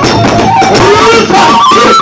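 Kagura festival music: a bamboo transverse flute (fue) playing a melody of held notes stepping up and down, over a beat on a large barrel drum.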